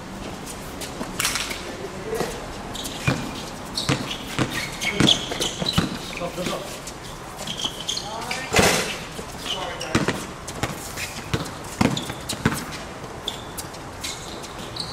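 Basketball bouncing on an outdoor hard court in a pickup game: irregular sharp thuds about ten times over the stretch, with players' voices calling out among them.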